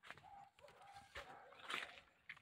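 Near silence with faint, short bird calls, and a couple of brief soft noises, one just past a second in and a slightly louder one near the end.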